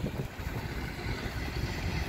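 Wind buffeting the phone's microphone outdoors, heard as a steady, fluctuating low rumble.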